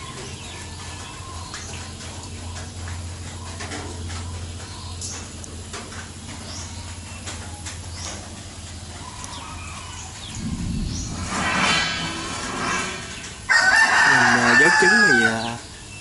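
A rooster crowing in the last part: a fainter crow about ten seconds in, then a loud one starting suddenly a couple of seconds before the end. Before that, only faint background.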